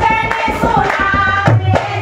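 A group of women sing a Hindu devotional bhajan together in kirtan style. Rhythmic hand-clapping and a dholak drum beat run under the singing.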